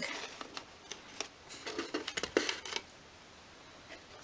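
Light handling noise from hands working on a small wooden model shed: scattered short clicks, taps and rustles, dying down near the end.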